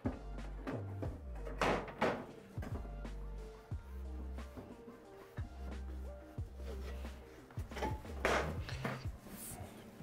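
Background music with a steady bass line, over a few knocks and thuds as the aluminium booth's top console lid is set down and handled, the loudest two close together about two seconds in.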